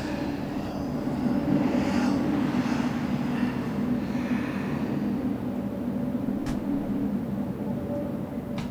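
Low, steady rumbling drone of eerie ambient horror sound design, with one faint tick about six and a half seconds in.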